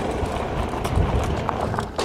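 Folding e-bike ridden fast over a bumpy dirt trail: wind rumbles on the microphone, with irregular thumps and rattles from the bike over the ruts.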